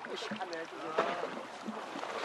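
Water splashing and fish thrashing as a set net full of mackerel is hauled up beside a fishing boat, with a run of short sharp splashes and knocks and fishermen's voices calling in the background.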